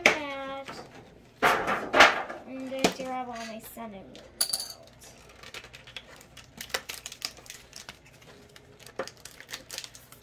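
Foil booster packs and cards being handled and set down on a table: scattered small clicks, taps and light rustles. A brief high ring sounds about four and a half seconds in.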